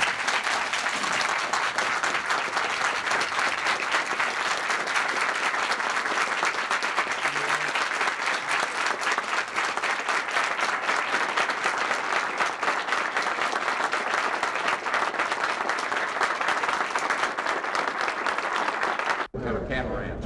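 Audience applauding steadily after a speech, cut off suddenly near the end.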